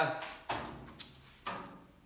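Three footsteps on a hard garage floor, sharp knocks about half a second apart at a walking pace, after a man's voice trails off.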